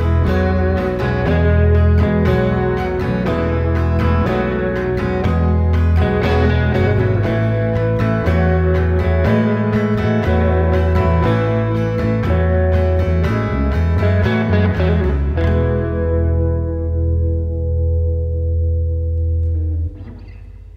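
Live band instrumental on acoustic guitar, hollow-body electric guitar and bass guitar, playing steady rhythmic chords over a heavy bass line. Near the end the playing stops on a last chord that rings out and fades, the close of the song.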